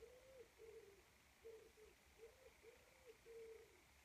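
A pigeon cooing faintly: a run of low coos, about two a second, repeated steadily.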